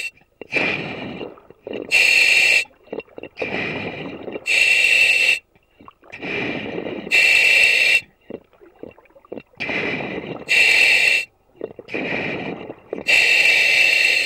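A diver breathing through a surface-supplied dive helmet, heard over the helmet's radio: five sharp hisses of gas through the demand regulator, about one every 2.5 to 3 seconds, each followed by a longer, lower rush of exhaled air bubbling out of the exhaust.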